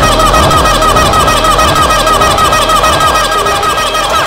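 Electronic dance music: a high, fast-repeating warbling synth figure over steady hi-hat ticks and a low kick about every second and a quarter.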